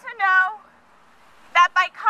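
A woman's voice amplified through a megaphone, in two short raised-voice phrases with a pause of about a second between them.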